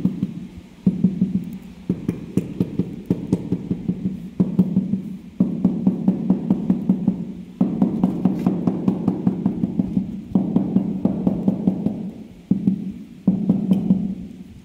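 Rubber mallet tapping large ceramic floor tiles down into wet mortar to bed and level them. The taps come in quick runs of several a second, each run lasting one to a few seconds with short pauses between, with a hollow low resonance under the knocks.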